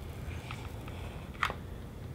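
Quiet room tone with a low steady hum and one short, sharp click about one and a half seconds in, heard while hot glue is run along a foam-board seam.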